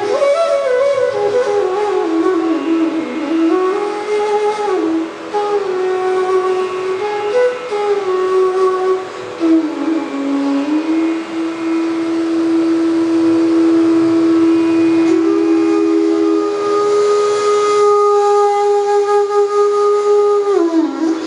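Bamboo bansuri flutes playing Raag Bhupali: a slow melody with sliding notes and a long held note in the middle, over a steady drone. Near the end a second bansuri overlaps and takes over the line.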